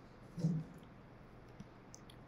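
A few faint computer mouse clicks over quiet room tone, with a short low hum of a voice about half a second in.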